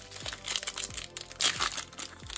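Foil wrapper of a 2021 Topps Stadium Club card pack crinkling and crackling as it is pulled open, with the loudest crackles about a second and a half in.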